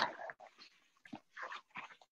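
A few faint, short, irregular breath and mouth noises from a speaker close to the microphone.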